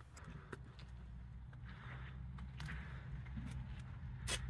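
Faint background: a low steady hum with a few faint ticks.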